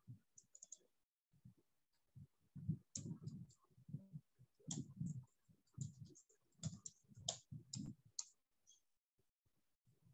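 Faint typing on a computer keyboard: an irregular run of keystrokes, sparse at first and then quick and close together from about three seconds in until just past eight seconds.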